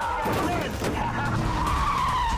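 Car tyres squealing in a skid, with one drawn-out squeal through the second half, in a busy trailer sound mix.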